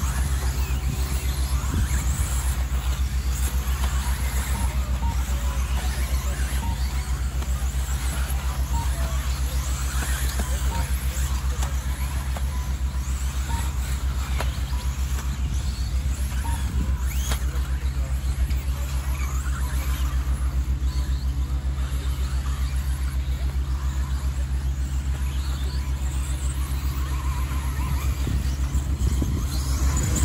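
Several 1:10 4WD RC buggies racing on a dirt track, their electric motors whining in short rising and falling glides, over a steady low hum.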